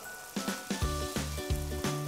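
Chicken and mushrooms frying in olive oil in an enamelled cast-iron pot, a steady sizzle, as smoked paprika is shaken in. Background music with a repeating bass line plays under it from about a second in.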